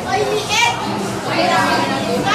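Many teenagers' voices talking and calling over one another at once, with no one voice clear: the chatter of a crowd of students.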